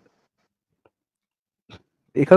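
Near silence: a pause in a voice call, with a faint click and a brief soft sound near the end.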